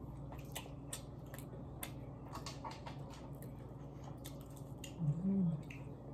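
A person chewing seaweed snack with the mouth closed: a scatter of small crunches and mouth clicks, with a short hummed "mm" about five seconds in.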